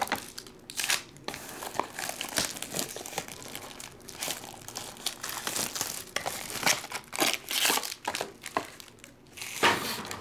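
Clear plastic wrapping crinkling and rustling in irregular bursts as trading cards and boxes are handled, with the loudest crackle near the end.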